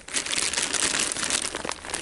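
Clear plastic bag crinkling and rustling under a hand, with a folded mesh insect cage inside it.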